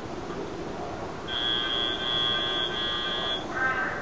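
Match-timer buzzer from FTC field software, one steady high electronic tone held for about two seconds.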